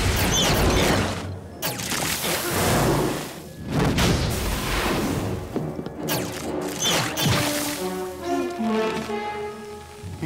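Cartoon action soundtrack: several long, noisy whooshing bursts with thuds as a fight goes on, over action music that comes to the fore near the end.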